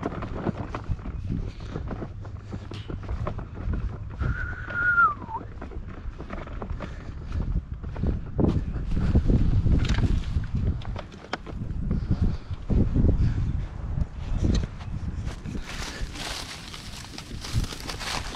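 Footsteps walking across grass and dry leaves, picked up by a body-worn camera's microphone with wind rumbling on it. A short whistle-like call falls in pitch about four seconds in, and near the end there is close, loud rustling of clothing and dry grass.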